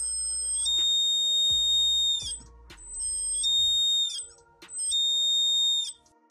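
Piezo buzzer in a BC547 darkness-sensor circuit sounding a high, steady beep in three bursts of roughly one to one and a half seconds each, as a hand shades the light-dependent resistor: the circuit has sensed darkness and switched the buzzer on.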